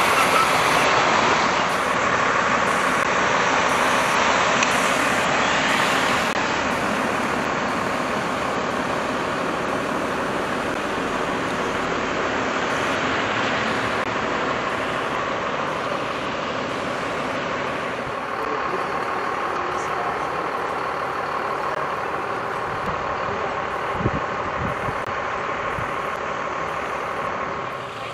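Rushing floodwater from a burst water main streaming over the street, with a fire engine's pump motor running steadily underneath.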